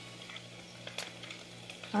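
Quiet room noise with a faint steady low hum and one light click about a second in.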